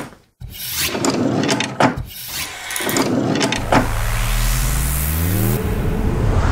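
Sound effects of an animated logo intro. A run of whooshes comes about once a second. Then a low rising tone climbs for about two seconds and breaks off just before the logo settles.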